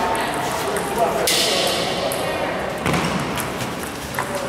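Table tennis ball knocks against paddle and table during a rally, two sharp hits about two seconds apart, with a brief hissing noise just after the first. Voices murmur throughout, in a large hall.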